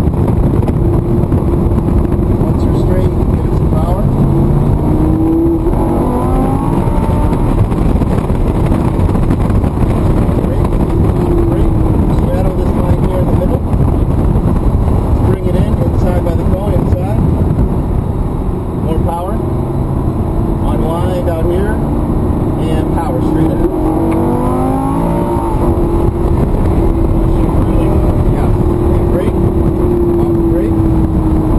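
Lamborghini engine heard from inside the cabin, running hard on track, its pitch climbing in two bursts of acceleration, with a short dip in loudness where it eases off between them.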